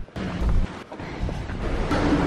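Wind buffeting the camera microphone: a rumbling, noisy roar with a strong gust about half a second in.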